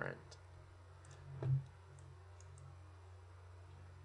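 A few sparse computer-mouse clicks, with one louder knock about a second and a half in, over a steady low hum.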